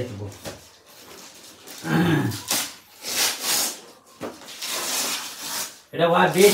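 Gift wrapping paper being rustled and torn off a wrapped box in several noisy bursts, with a brief voice about two seconds in.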